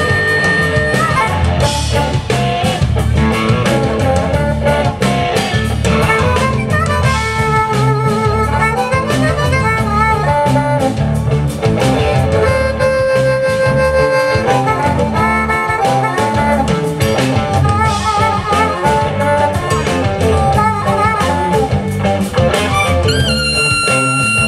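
Amplified blues harmonica solo, cupped in the hands against a microphone, its notes bending and wavering, over a live blues backing band.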